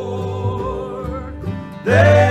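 A gospel song in bluegrass style: men's voices singing to acoustic guitar and upright bass. The sound dips briefly just before the end, then the voices come in loud together.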